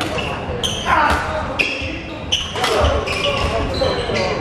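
Badminton doubles rally on a wooden indoor court: several sharp racket strikes on the shuttlecock, short high shoe squeaks and thuds of footwork on the floor, with players' voices in the hall.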